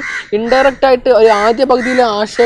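A man talking animatedly in Malayalam, in a fairly high, expressive voice.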